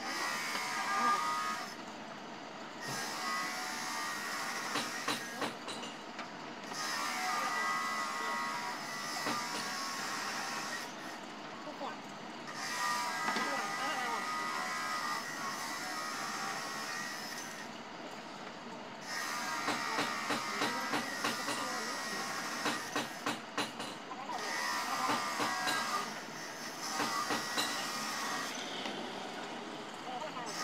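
People's voices talking on and off, with a run of light, sharp clicks about two-thirds of the way through.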